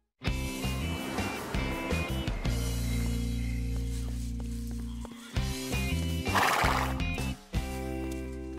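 Cartoon soundtrack music of sustained chords over a bass line that moves in steps, with a brief noisy horse sound effect about six and a half seconds in.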